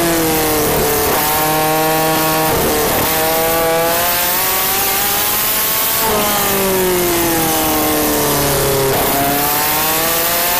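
Midget race car engine heard onboard at speed, its pitch falling as the driver lifts off into a corner and rising again back on the throttle. This happens twice: the pitch falls until about a second in, then climbs and holds. It falls again from about six seconds to nine, then rises near the end.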